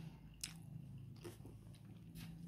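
Faint chewing of a mouthful of fried rice, with a small click about half a second in, over a faint low steady hum.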